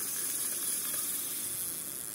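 Shimano rear-drag spinning reel being cranked by hand: a soft, steady whirr of the gears and rotor with a hiss and no clicking.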